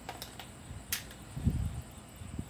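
Handling noise as small gear is picked up: a few light clicks, a single sharp click about a second in, and low bumps just after.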